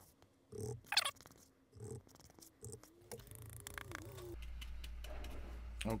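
Faint scrapes and taps of a spoon stirring wet plaster of Paris in a paper bowl and scooping it into a canister, with a short faint wavering tone around the middle and a steady low hum in the last second and a half.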